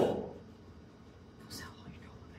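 A man's spoken phrase trails off at the start, followed by a pause of low room tone with one short breathy sound about one and a half seconds in.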